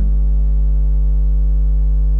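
A steady, loud electrical mains hum with a buzzy stack of overtones.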